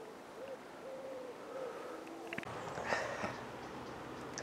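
A bird calling in a series of low, soft, hooting coos in the first half, followed after a couple of seconds by a short rush of rustling noise.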